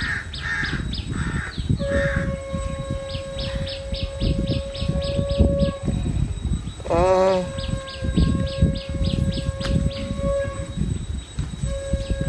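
Birds calling outdoors: a bird repeats short high chirps about four times a second in two runs, and one wavering call comes near the middle. Under them a steady droning tone holds for several seconds, breaks off, then returns, over low wind rumble on the microphone.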